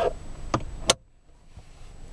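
Car glove box lid being swung shut by hand: a light knock about half a second in, then a sharp click as the latch catches.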